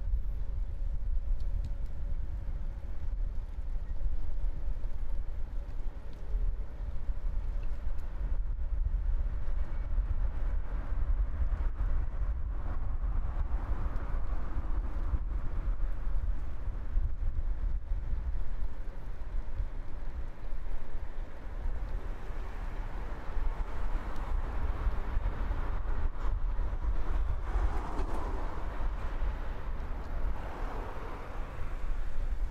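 Road traffic on a multi-lane street: vehicles passing and fading, louder about halfway through and twice near the end, over a steady low rumble.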